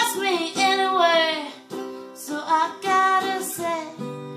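A woman singing long, sliding and wavering notes, without clear words, over a strummed acoustic guitar.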